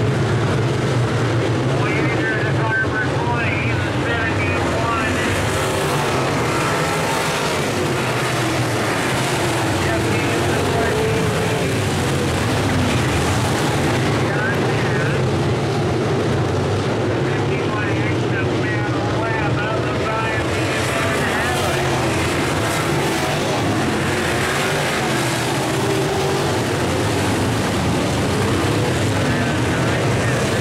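A pack of IMCA Modified dirt-track race cars' V8 engines running together at racing speed, with their pitch rising and falling as the cars pass and accelerate.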